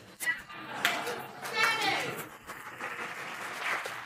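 Audience laughing and murmuring in a large hall, with one high voice rising above the crowd about a second and a half in.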